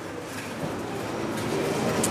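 Steady background noise of a large supermarket hall, with no distinct events, growing slowly louder.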